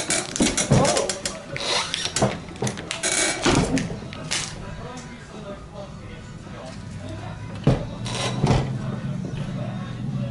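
Handling noise at a swing-away heat press: a run of clicks and knocks for the first few seconds as the jersey and press are worked, then quieter, with two sharp knocks near the end and a low steady hum coming in.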